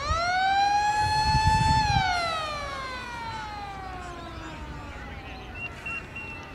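A motor-driven siren sounding once: it winds up quickly to a steady high pitch, holds for under two seconds, then winds down slowly over about four seconds.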